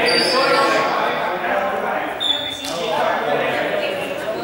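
Several voices talking over one another, echoing in a large sports hall, with a short high squeak about two seconds in.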